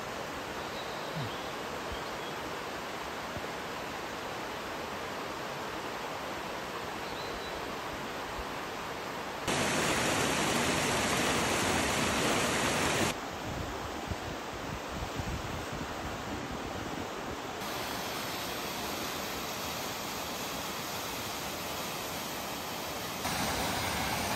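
Steady rush of a mountain stream flowing over rocks, jumping louder for about three seconds near the middle and rising again near the end.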